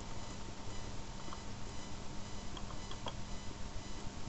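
Steady background hiss and low hum on the recording microphone, with a few faint computer-mouse clicks.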